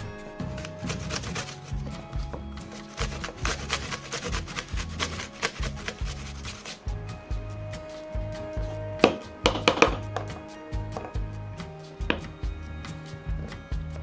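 Background music with a steady beat over repeated rasping strokes of an unpeeled apple rubbed on a flat metal hand grater. A few sharper knocks stand out about nine to ten seconds in.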